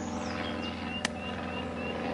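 A steady low motor hum, with a run of short high chirps about three a second and a single sharp click about a second in.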